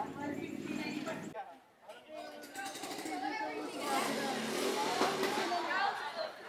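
Several people talking at once in the background, with no single clear voice; a brief drop in level about a second and a half in, then the chatter picks up again.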